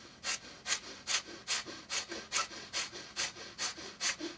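Kapalabhati (breath of fire): a person's rapid, forceful exhales through the nose, short puffs evenly spaced at about two and a half a second.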